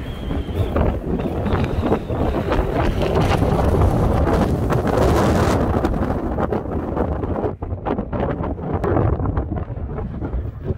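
Strong gusting wind buffeting the microphone: a loud, low rumbling noise that is heaviest in the middle and eases a little near the end.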